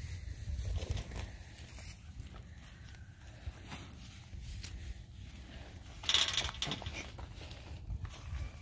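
A calf tearing and chewing a mouthful of fresh grass held out to it, a crackly rustle of grass blades that is loudest about six seconds in, over a low rumble.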